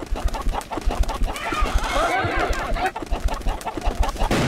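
Chicken and rooster clucks and crows from a film soundtrack, cut into a rhythm over a quick, regular low thump.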